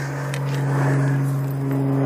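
Mercury 60 hp three-cylinder two-stroke outboard motor running steadily at idle.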